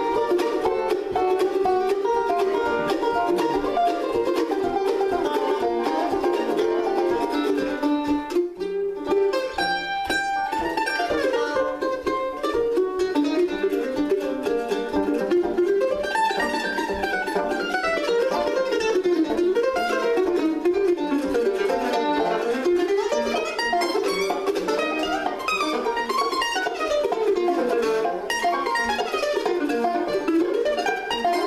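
Five-string resonator banjo and F-style mandolin playing an instrumental bluegrass tune as a duet. The banjo rolls lead at first. After a short break about eight seconds in, the mandolin takes the lead with fast picked melody lines.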